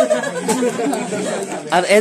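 Chatter: several people talking over one another.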